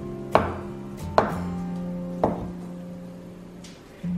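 Kitchen cleaver slicing through firm tofu and knocking on a wooden cutting board: three sharp knocks about a second apart, over soft background music.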